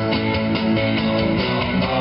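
Acoustic guitar strummed in chords, an instrumental stretch of a live rock-and-roll cover with no singing.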